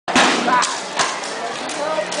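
Crowd chatter from many voices, with three sharp knocks in the first second, the first the loudest.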